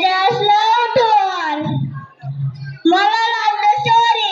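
A small group of young children singing into a handheld microphone, in two sung phrases with a short break about two seconds in.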